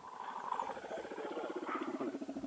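Motorcycle engine idling steadily, a low, even, rapid pulsing.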